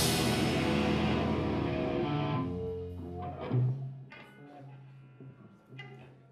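Live rock band with electric guitars and drums ending a song: the last loud chord rings out and fades away over the first three seconds. A low steady hum and a few scattered small sounds are left.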